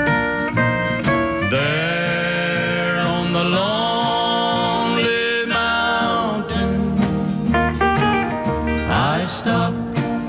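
A country sacred song played by a band: acoustic guitar with sliding steel-guitar notes, in a passage between the sung lines.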